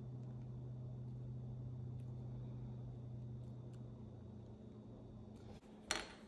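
Quiet room tone with a steady low hum and faint handling noises as small rubber parts are handled, with a short sharp click near the end.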